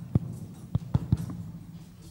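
Five or six dull, low thumps in quick, uneven succession over a steady low hum, bunched in the first second and a half.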